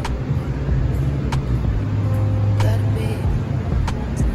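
A steady low rumble of outdoor background noise, with faint music and a few soft clicks about a second apart.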